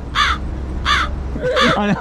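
A crow cawing three times, harsh calls evenly spaced about 0.7 s apart.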